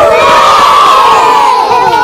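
A group of young children shouting and cheering together, many voices at once and loud, the pitches sliding downward as the shout goes on.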